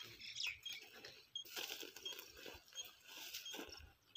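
Footsteps rustling and crackling on dry grass and ground, with a faint short electronic beep repeating about every 0.7 seconds.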